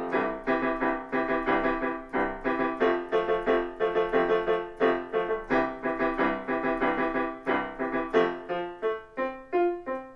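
Yamaha digital piano played in a steady rhythm of struck chords and notes, each one fading before the next, with no singing over it.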